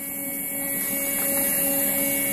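Graphic Whizard PT-330 Mini tabletop paper creaser running empty with no sheet in it: a steady motor-and-roller hum with a thin high whine, slowly growing louder.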